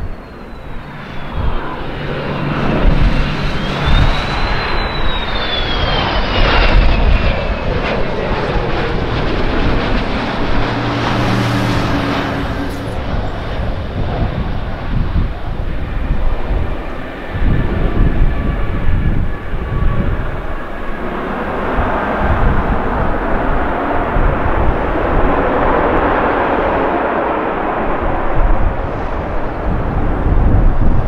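A Learjet 60's twin turbofan engines on landing: a high whine falls in pitch as the jet passes close on final, over constant low rumble. A louder surge of engine noise comes about twelve seconds in as it rolls out on the runway.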